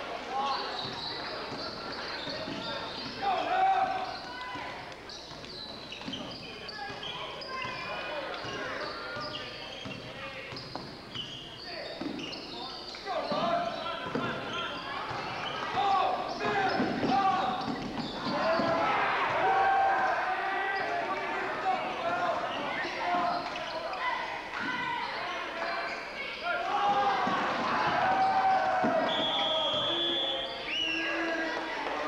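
Basketball dribbled on a hardwood gym floor during a game, with players' and spectators' voices mixed in; the voices grow louder from about halfway through.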